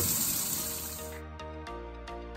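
Kitchen tap water running into a stainless steel sink, cut off about a second in. Electronic background music with a steady beat fades in and takes over.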